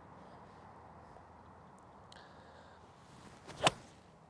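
Five iron swung through and striking a golf ball: a short swish, then a single sharp crack of impact near the end.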